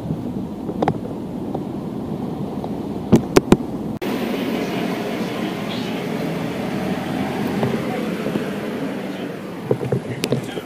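Outdoor city street background noise, a steady murmur, with two sharp clicks about three seconds in. The background changes abruptly about four seconds in to a brighter, hissier hum.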